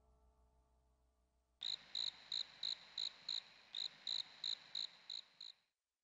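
A cricket chirping in a steady run of short, high chirps, about three a second, starting just under two seconds in and cutting off abruptly about a second before the end. Before the chirping, the faint tail of background music fades out.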